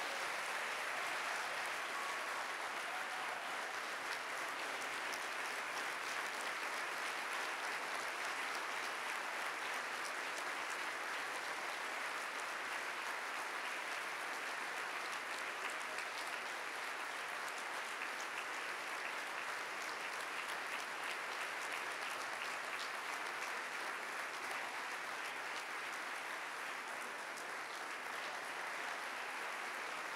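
A large audience applauding, one long unbroken round of clapping that eases only slightly near the end.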